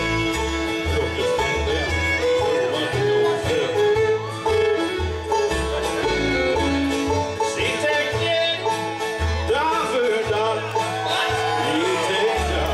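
A live bluegrass band kicks off an instrumental intro, the fiddle leading with sliding phrases over banjo, acoustic guitars and upright bass. The whole band comes in together at once, and the bass plays a steady run of notes.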